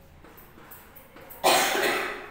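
A woman's single loud cough near the end, sudden onset and fading over about half a second.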